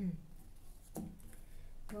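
Tarot cards being handled on a cloth-covered table, with one short tap about a second in as cards are set down or squared.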